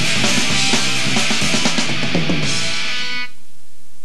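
Live rock band, with electric guitar and a drum kit, playing loud to the end of a song; the music stops suddenly about three seconds in.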